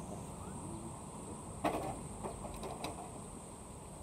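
Handling noise from a phone camera held outdoors: a sharp click about a second and a half in, then a few lighter clicks, over a steady background hiss with a thin high steady whine.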